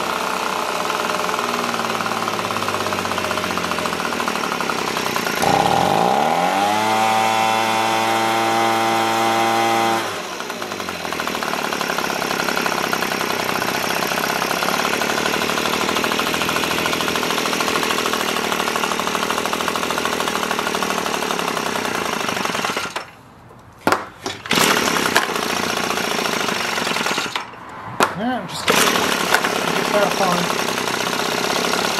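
Echo PB-265LN leaf blower's small two-stroke engine running, which the owner feels is lacking power. About five seconds in it revs up, holds high for several seconds, then drops back to a lower speed. Near the end the sound cuts out twice briefly, with a few clicks.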